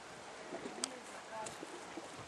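Outdoor ambience: a steady hiss with faint, distant voices and short bird calls, and a sharp click a little under halfway through.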